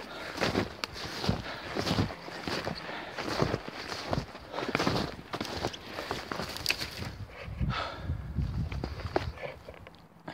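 Footsteps in snow at a walking pace, about two steps a second, with the rustle of a jacket rubbing near the microphone; the steps ease off near the end.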